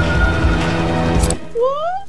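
Tense cartoon underscore music that cuts off suddenly about a second and a half in on a short sharp click, followed by a voice sliding upward in pitch.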